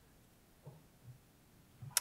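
Near silence: the quiet room tone of a pause, with a couple of faint low sounds and a short click just before speech resumes near the end.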